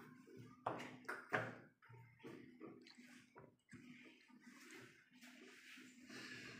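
Light knocks of plastic chess pieces being handled on a wooden table, three sharp ones close together about a second in, then faint scattered clicks.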